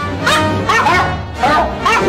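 Music made of pitched dog barks set to a tune, about six barks in two seconds, each rising and falling in pitch, over a steady low backing.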